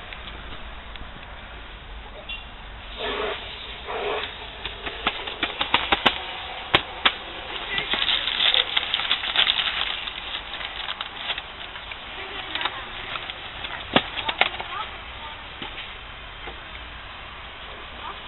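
A small paper packet handled and rustled in the hands, with a few sharp clicks or taps and short wordless vocal noises.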